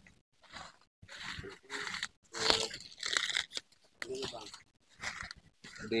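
Dry twigs and dry bamboo leaf litter crunching and snapping in a series of irregular crackles as kindling is gathered and broken by hand, with faint low voices.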